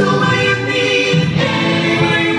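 Live band playing a rock song, with guitars, keyboard and drums behind sung vocals.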